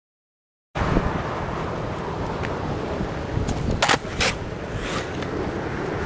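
Caster board's polyurethane wheels rolling on a concrete path, heard as a steady rumble mixed with wind on the microphone, starting abruptly under a second in. About four seconds in come two sharp clacks less than half a second apart, the board hitting the pavement during the shove-it.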